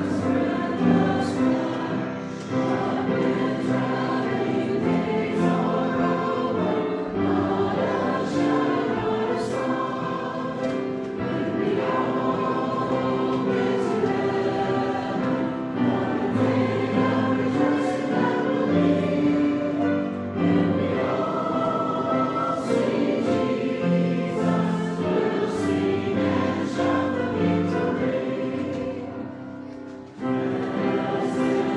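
Church congregation singing a hymn together in long held notes, the singing dying down near the end.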